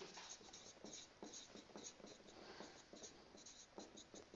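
Faint squeaks and taps of a marker pen writing letters on a whiteboard, in short irregular strokes.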